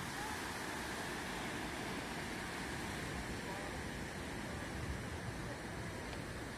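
Steady rush of ocean surf breaking on the beach below.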